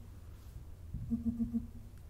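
A quick run of about six short, low-pitched blips, a few per second, from finger taps on smartphone touchscreen calculator keypads: the phones' keypress feedback as the same digit key is hit repeatedly.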